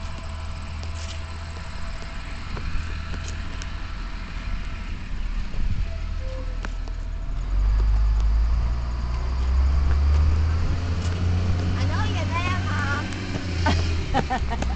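Yellow school bus's diesel engine rumbling low and steady at the stop, louder from about halfway through, with a child's brief voice near the end.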